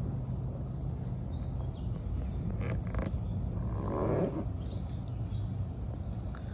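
Outdoor background with a steady low rumble, two brief crackles about halfway through, and a soft breathy sound about four seconds in.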